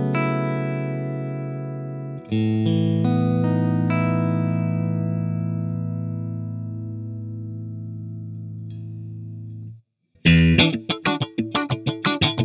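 Electric guitar played through a Synergy IICP preamp module modelled on the Mesa/Boogie Mark IIC+. A chord is struck about two seconds in and rings out, fading slowly until it is choked off near ten seconds. Then comes a fast, tightly muted, distorted riff of short stabbing notes.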